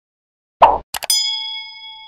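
Subscribe-button animation sound effects: a soft pop about half a second in, then two quick mouse clicks and a bell ding that rings on and slowly fades.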